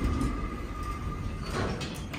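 Otis traction elevator heard from inside the car: a steady low rumble with a thin high whine from the running machinery, then about one and a half seconds in a short rush of noise and a few clicks, the car doors sliding.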